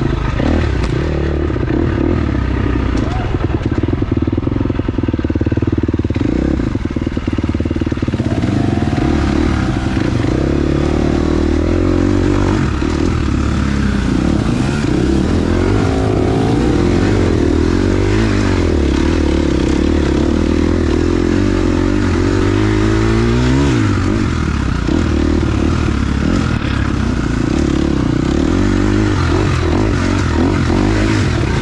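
KTM dirt bike engine running hard throughout, revving up and down as the throttle is worked, with marked pitch rises a few times.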